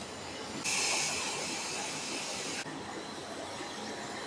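A steady high-pitched hiss lasting about two seconds, starting and stopping abruptly, over faint room noise.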